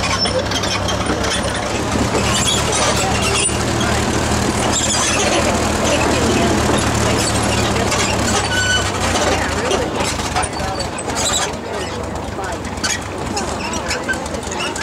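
Farm tractor engine running steadily at low speed as it pulls a wagon along a dirt track. Its drone fades about ten seconds in.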